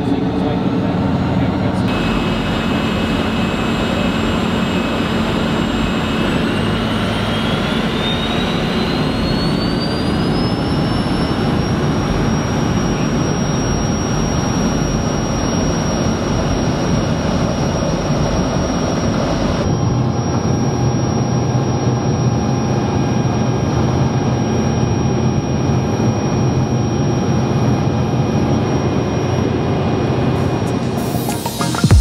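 Cirrus Vision Jet's single Williams FJ33 turbofan heard from inside the cabin: a steady rumble under a high whine that rises in pitch for about five seconds as the engine spools up, then holds steady. The sound changes abruptly about two-thirds of the way through.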